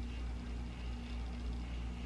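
Steady low background hum with a faint even hiss: room tone, with no distinct sound events.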